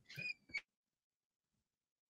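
Near silence, broken in the first half second by two faint, short high-pitched squeaks.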